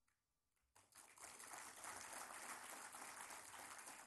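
Faint audience applause from a large seated crowd, starting about a second in and continuing steadily.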